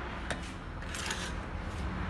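Handling noise from a laptop motherboard and multimeter being moved on a workbench: a sharp click about a quarter second in, then a short rustle about a second in.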